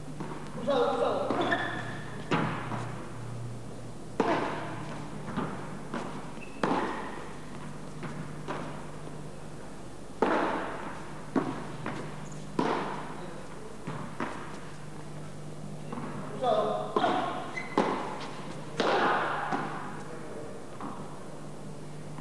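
A padel rally: the ball struck back and forth with solid padel paddles and rebounding off the court and its walls, a sharp knock every second or two.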